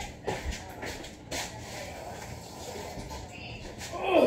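Fast-food packaging handled at a table: a few short clicks and rustles of paper and cardboard, the sharpest about a third of a second and a second and a third in.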